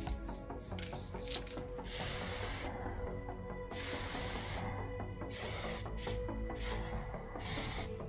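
Aerosol spray-paint can hissing in short, irregular bursts as a line is sprayed onto a wall, starting about two seconds in, over background music.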